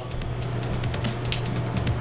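Background music under a run of small sharp clicks: a thumbnail snapping against the brim of a plastic water bottle's cap, faking the crackle of a factory seal being broken.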